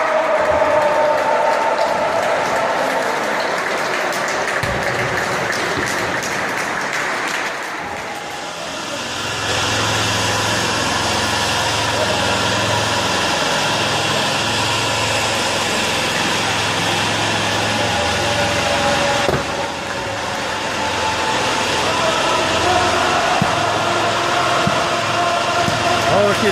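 Ice rink ambience: many voices of players and spectators chattering together. A steady low hum joins the voices about ten seconds in.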